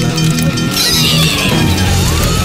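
Cartoon background music with a high cry that slowly falls in pitch, as a character reacts to a mouthful of hot pepper. A short hiss comes about a second in.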